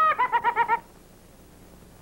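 A high-pitched cartoon voice laughing. It holds one squeaky note, then gives about six quick 'ha' syllables and cuts off a little under a second in. Faint tape hiss follows.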